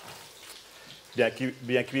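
Beef fillet steak sizzling faintly in butter in a frying pan, a soft steady hiss; a man's voice comes in a little over a second in.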